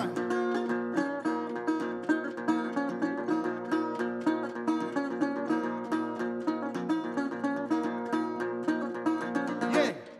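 Metal-bodied resonator guitar played solo: a quick, even run of picked notes that ends on a louder final strike near the end and rings out as the tune finishes.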